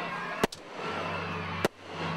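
Aerial fireworks bursting: two sharp bangs, about half a second in and again just over a second later.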